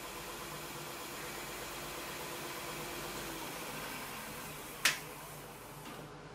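Stationary edge belt sander running with a steady hum, then slowing down and fading over the last couple of seconds. One brief sharp click about five seconds in.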